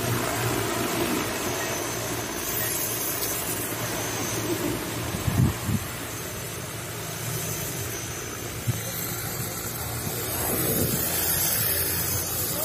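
Large multirotor agricultural seeding drone, its rotors humming steadily with a broad rushing noise over the hum as it flies. A brief loud bump about five seconds in.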